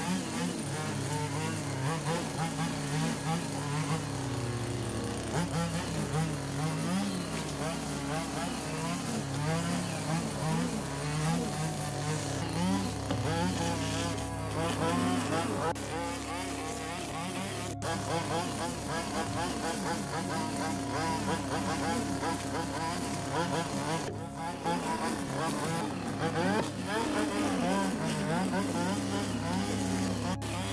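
Stihl petrol string trimmer running at high revs, its line cutting long grass and weeds, the engine note wavering as the throttle is worked.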